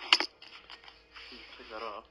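Masking tape being peeled off a freshly spray-painted scooter part: a sharp snap just after the start, small crinkles, then a rasping tear in the second half, with a short murmured vocal sound near the end.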